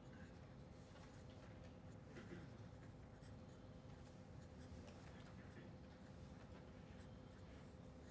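Faint scratching of a pen writing on paper, in short strokes as words are written out, over a faint steady hum.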